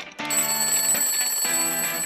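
Jingle music with an alarm-clock bell ringing over it. The ringing starts about a quarter second in and is the loudest part.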